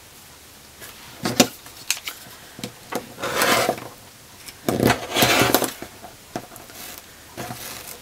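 An acrylic quilting ruler and fabric being slid and shifted on a cutting mat: a couple of light clicks, then two longer scrapes.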